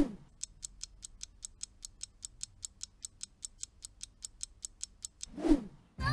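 Countdown timer sound effect: a clock ticking evenly, about five ticks a second. It is framed by a short swish at the start and another about five and a half seconds in.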